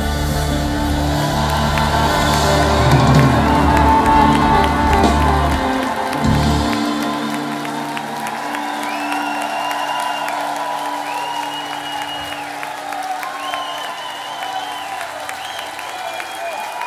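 Live band playing the last bars of a song and ending on a final hit about six seconds in. Audience applause and cheering follow, with several long, high whistles.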